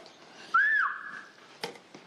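A person whistling a short call: a quick note that rises and falls, then a steady held note lasting about a second. A single sharp click follows just after it ends.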